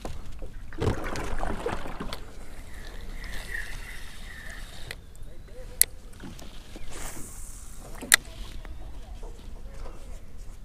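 Handling noises from a fishing rod and reel in a plastic kayak: a rustling knock about a second in, a faint whirring a few seconds later, and two sharp clicks, about two seconds apart.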